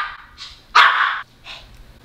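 A small pet dog barking: one loud short bark a little under a second in, with fainter short barks before and after it.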